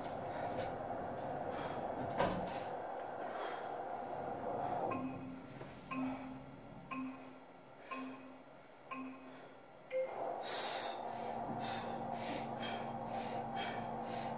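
Motor of an ARX adaptive-resistance leg press humming as it drives the foot platform into position. Then come five short electronic countdown beeps about a second apart, and about ten seconds in the motor starts up again for the next round.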